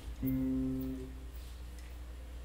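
A single low note on an acoustic guitar, struck about a fifth of a second in and ringing for about a second as it fades away.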